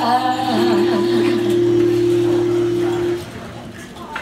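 A live jazz band holds the song's final chord: a steady sustained note over a low bass note, ending about three seconds in.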